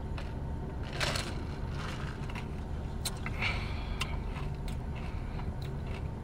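Car air conditioning running with a steady low hum and hiss, under sips of an iced drink and chewing of frozen passion fruit bits, with a few small clicks and crunches.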